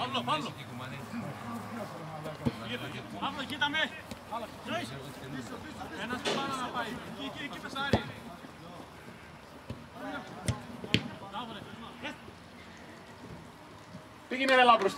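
Distant shouts of players across an open football pitch, with several sharp thuds of a football being kicked spread through.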